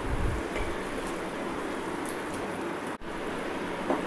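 A pan of boiling, spiced onion water bubbling and hissing steadily, with a soft low plop near the start as a lump of mashed potato drops in.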